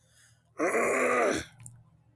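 A man's drawn-out wordless vocal sound, a groan-like "uhh" just under a second long that drops in pitch at the end.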